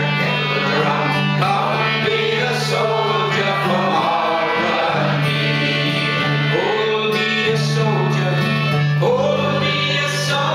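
Folk song played on a concertina and a strummed acoustic guitar, with voices singing over held low concertina notes.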